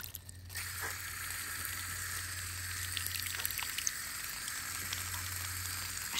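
Water running from an outdoor well faucet, a thin stream splashing onto a hand and the leaf-covered ground below: a steady hiss that picks up about half a second in.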